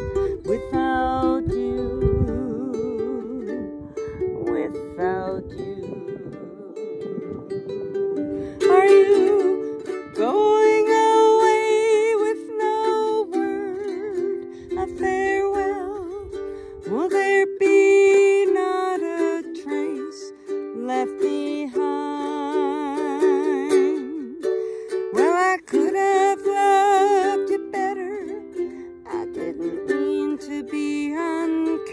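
Ukulele strummed in a steady folk accompaniment, with a woman singing over it; her voice comes in strongly about nine seconds in.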